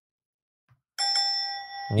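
A bell-like ding sound effect, struck once about a second in and ringing out over about a second, marking a correct quiz answer.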